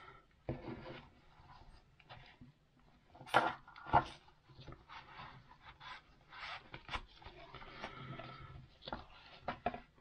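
A large fixed-blade knife being handled and slid into its fabric sheath: rubbing and scraping of the canvas-like sheath and straps, with scattered clicks. Two sharp knocks stand out about three and a half and four seconds in, and another near seven seconds.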